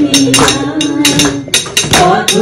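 People clapping along in a steady beat, about four claps a second, to music with a long held note that stops about a second and a half in.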